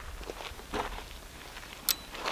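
Soft footsteps and handling rustle as a fishing rod is picked up, with one sharp click near the end.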